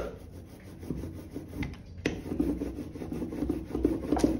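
Inked rubber brayer rolled back and forth over a carved lino block, a rubbing sound in repeated strokes as the ink is spread across the block.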